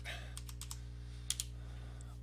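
Computer keyboard typing: a quick run of four or five key clicks, then two more about a second later.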